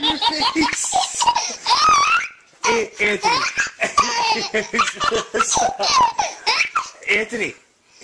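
Baby laughing in repeated high-pitched belly-laugh bursts, breaking off briefly about two seconds in and again near the end.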